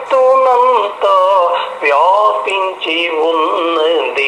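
A man singing a devotional song to Ramanuja alone, with no accompaniment, in long wavering held notes broken by short breaths.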